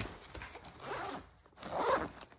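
Zipper on a MATEIN 40L carry-on backpack being pulled along a compartment, in two strokes, the second louder near the end.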